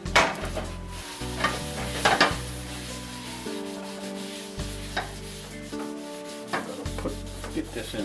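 Paper towel rubbing flaxseed oil over the bottom of a hot cast iron skillet, a steady scratchy wiping, to season it. A few sharp knocks come from the pan shifting on the stove's burner grate.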